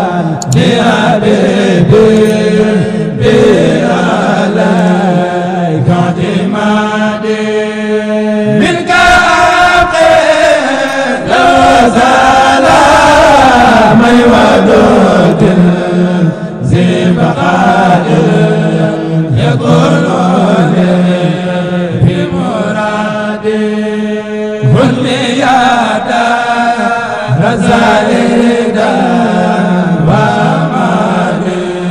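A man singing a devotional chant solo into a microphone, in long ornamented phrases with gliding held notes, over a steady low held tone.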